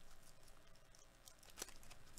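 Faint crinkling of a foil trading-card pack wrapper being handled, with a sharper crackle about one and a half seconds in.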